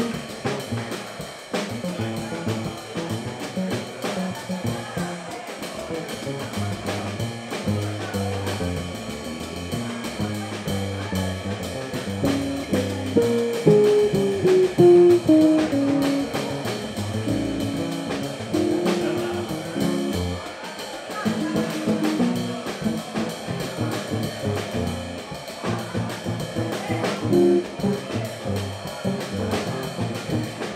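Small jazz group playing a funky soul-jazz groove on double bass, hollow-body electric guitar, drum kit and saxophone. A run of falling notes about halfway through is the loudest part.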